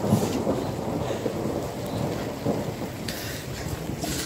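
Irregular low rumbling and rustling on a phone microphone: handling noise and wind buffeting as the handheld phone is swung about.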